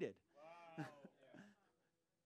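A person's voice, faint: a short wavering vocal sound about half a second in, lasting about half a second, followed by a few quieter traces.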